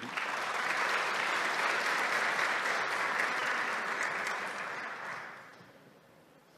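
An audience applauding. The applause starts at once, holds steady, and dies away about five seconds in.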